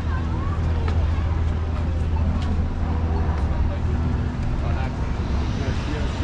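Busy city street: a steady low rumble of passing car traffic, with people on the sidewalk talking as they walk by.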